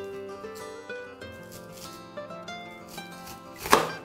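Background music throughout, and near the end a single short, loud cut as a kitchen knife slices through an onion onto a cutting board.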